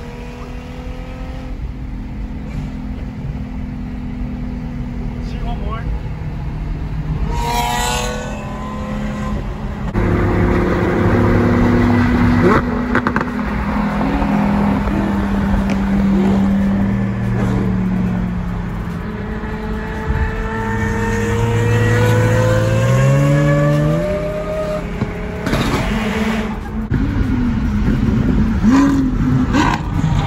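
Loud Lamborghini supercar engines at highway speed, heard from inside an accompanying car. They accelerate, with the revs climbing in steps through gear changes a little past the middle.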